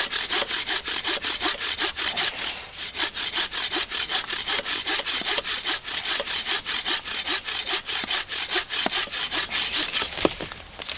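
Bow saw cutting through a branch in quick, even back-and-forth strokes, about four a second, with a short softer patch about a quarter of the way in.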